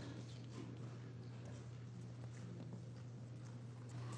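Faint sound of a large hall between speeches: a steady low hum, with scattered light footsteps, clicks and rustles as people move about.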